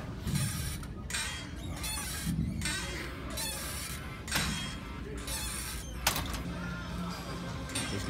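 Seated pec-deck fly machine in use: its arms, pulleys and weight stack creaking and clicking with each repetition, in short repeated pulses about twice a second, with one sharp click about six seconds in. Music plays faintly underneath.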